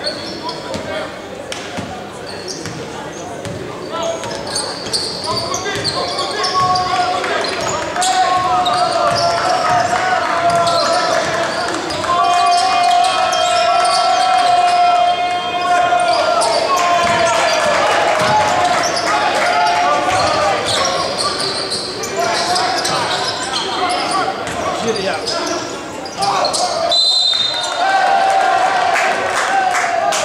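Basketball being dribbled and bounced on a hardwood court during live play, echoing in a large sports hall, with voices calling and shouting over it.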